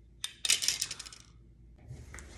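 A sharp click, then a quick clattering run of clinks lasting about half a second, like small hard objects tumbling onto a hard surface.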